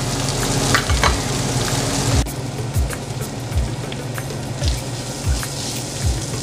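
Ground pork and green beans sizzling as they fry in a pan, with a steady hiss. Background music with a regular low drum beat plays underneath.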